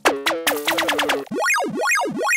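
Electronic glitch-hop instrumental: a quick run of short synth blips, each dropping in pitch, then a synth tone sweeping up and down in pitch over and over, a little more than twice a second.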